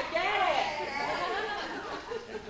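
Indistinct chatter: several people talking at once, with no words clear.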